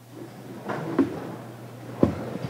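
Chairs shifting as people sit back down at meeting tables, with rustling and a sharp knock about a second in, over a steady low hum.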